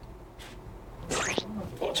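A man's short pained groan with a sudden hiss, about a second in, as an acupuncture needle goes into the side of his nose.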